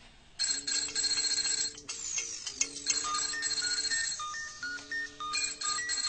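Mobile phone ringtone, a looping tune of short stepping notes over a held low tone, starting about half a second in and repeating roughly every two seconds: an incoming call.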